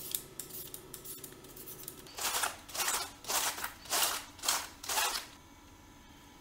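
Fresh cabbage shredded with a handheld cabbage shredder peeler. A few light quick strokes, then about six strong crisp rasping strokes, roughly two a second, that stop about a second before the end.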